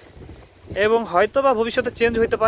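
Wind rumbling on the microphone outdoors, with a person starting to speak in Bengali about a second in.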